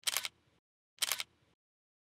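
Smartphone camera shutter sound, twice, about a second apart: short crisp clicks with silence between.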